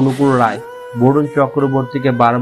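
A man's voice with drawn-out notes that slide in pitch, pausing briefly about half a second in.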